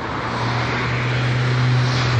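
A car passing close by: tyre and engine noise swelling over the two seconds, with a steady low engine hum.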